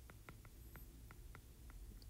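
Faint ticks of a stylus tip tapping a tablet screen while handwriting a word, several a second and unevenly spaced, over near silence.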